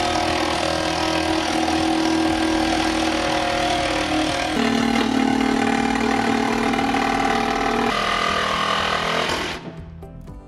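Cordless reciprocating saw cutting through a boat's fiberglass helm console. It runs steadily, its pitch drops about halfway through and rises again near the end, then it stops just before the end.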